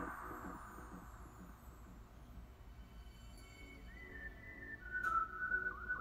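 Background music with a beat fading out, then a faint, steady whistle-like tone from about four seconds in that drops slightly in pitch about a second later, with a single soft click.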